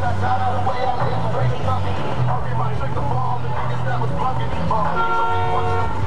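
Street cruising scene: bass-heavy music pulsing from car stereos under a crowd's voices, with a car horn sounding once for about a second near the end.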